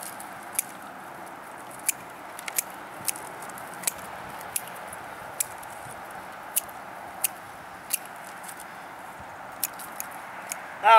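Hand pruners snipping through purple sand cherry canes: about a dozen short, sharp clicks at irregular intervals over a faint, steady background hiss.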